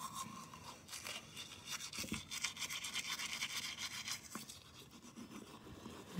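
Toothbrush scrubbing teeth through toothpaste foam in quick, repeated back-and-forth strokes.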